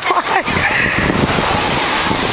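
Steady wind rumbling on the camera microphone, with the voices of a large group of children running past mixed in.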